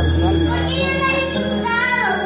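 A young girl singing a psalm into a microphone, accompanied by an electronic keyboard that holds a low bass note under her melody.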